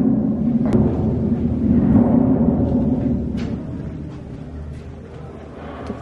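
A loud low rumble filling an underground brick-vaulted wine cellar, steady for about three seconds and then dying down.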